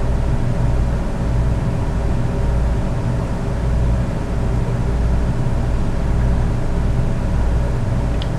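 Steady low hum of a room air-conditioning unit running, an even drone with a buzzy edge that doesn't change.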